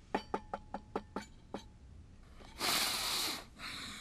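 About seven quick light clicks in the first second and a half, then a long, heavy sigh from an elderly man leaning back in his chair.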